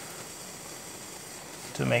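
Backpacking gas-canister stove burning under a pot of water, a steady even hiss.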